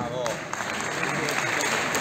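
Audience applauding, the clapping growing gradually louder.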